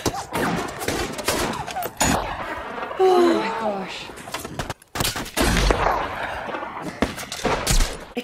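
Movie-soundtrack firefight: many rapid rifle shots in quick succession, with a voice shouting about three seconds in. The sound drops out briefly near five seconds, then heavier, deeper shots follow.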